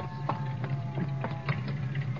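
Radio-drama sound effect of a car engine idling, with a few sharp clicks at uneven spacing.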